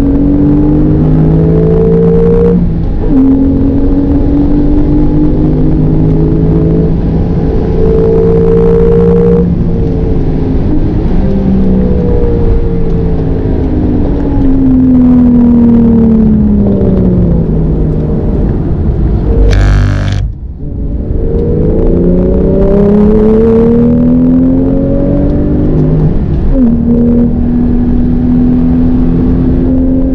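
Porsche 911 GTS twin-turbo flat-six heard from inside the cabin on track, pulling hard with the revs climbing, and upshifts about two and a half seconds in and again near the end. In the middle the revs fall steadily for several seconds. About twenty seconds in, a brief sharp noise is heard as the engine note drops away, before it climbs again.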